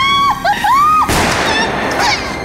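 A woman screaming and wailing in high, wavering cries. About a second in, a short, harsh burst of noise follows, then a few brief cries.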